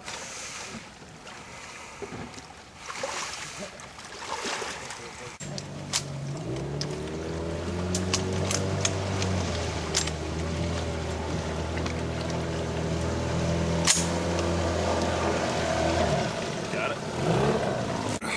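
Johnboat outboard motor running: it comes in about a third of the way through, rises in revs, holds a steady pitch, then drops off near the end, with a few sharp knocks. Before it, wind noise and water splashing.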